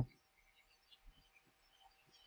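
Near silence: room tone with a faint steady background whir and a few faint, small handling clicks.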